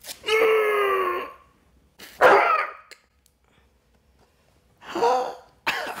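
A man crying out and groaning in pain in four short vocal outbursts, the first a held, slightly falling groan of about a second, as hardened wax is pulled from his face.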